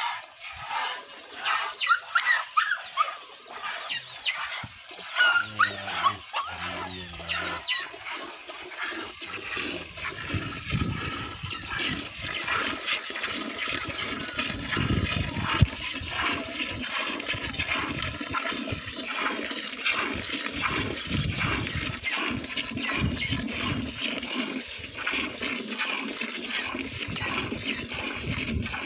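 Milk squirting into a steel pail as a water buffalo is milked by hand: a steady run of repeated short squirts, one after another.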